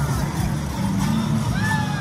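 Parade music for the dancers, with sustained low notes that change pitch every fraction of a second, mixed with crowd noise; near the end a single voice calls out, rising and then falling.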